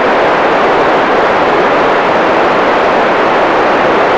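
Loud, steady hiss of a VHF radio receiver with no signal, the static of an open FM channel once the ISS downlink has faded out. It cuts off suddenly just after the end.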